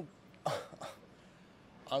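Two short breathy voice sounds, a brief 'um' and 'oh', about half a second and just under a second in, then near silence.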